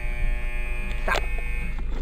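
A steady electric buzz inside an automatic car wash, heard from inside the car, cutting off just before the end; the word 'stop' is spoken over it about a second in.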